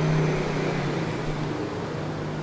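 A steady low mechanical hum with a background of even noise.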